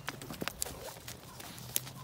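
Horse trotting on soft wood-chip footing: a few scattered hoofbeats and clicks.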